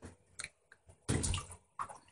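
Shallow bathwater in a bathtub splashing and sloshing in short bursts, the loudest about a second in, with a few small clicks between.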